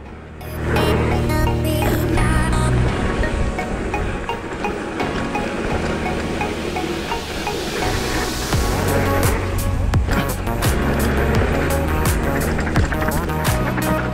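Background electronic music that swells in just after the start, builds with a rising wash of sound in the middle, and settles into a steady beat about two-thirds of the way in. Under it runs the rumble of mountain bike tyres on a gravel trail.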